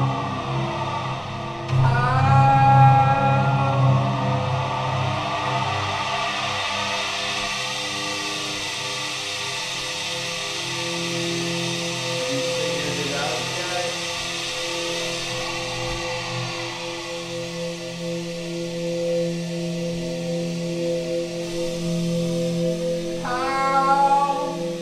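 Synthesizer music played live on a keyboard: long held chords over a steady hiss-like wash. Chords bend up in pitch as they begin, about two seconds in and again near the end.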